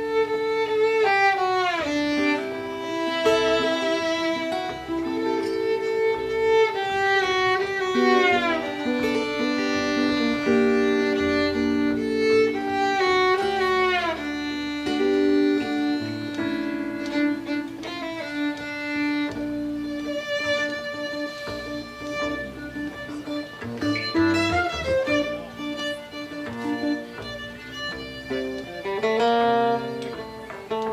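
Violin playing a lead melody with sliding notes over strummed acoustic guitar accompaniment, with no singing.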